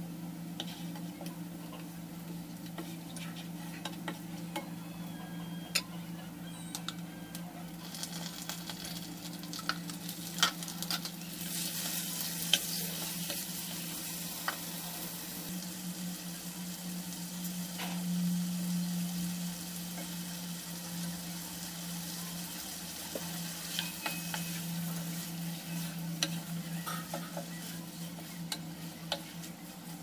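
Oil sizzling in a wok as chopped aromatics and bay leaves fry, with a wooden spatula stirring and knocking against the pan in scattered clicks over a steady low hum. The sizzle grows louder a little before halfway, as raw chicken pieces go into the hot oil.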